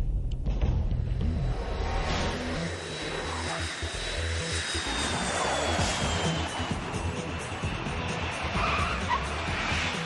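Jet noise from F/A-18 Hornet fighters: a steady rushing noise with a thin high whine that slowly falls in pitch as the jets pass, mixed with background music.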